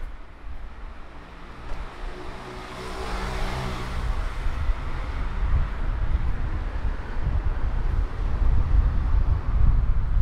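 A car passes by, its engine hum and tyre noise swelling and fading about three seconds in. An uneven low rumble builds through the second half.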